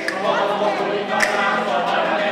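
Several voices singing together loudly over a strummed acoustic guitar, a sung folk-style number.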